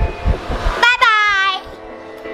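Music with a child's voice: a short, high-pitched call about a second in, over some low thumps in the first second.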